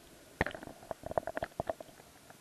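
A string of short, muffled clicks and knocks heard underwater through a sealed waterproof camera case, one about half a second in and then a quick cluster over the following second.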